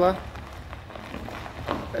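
Faint crunch of a Nissan 370Z's tyres rolling slowly over gravel.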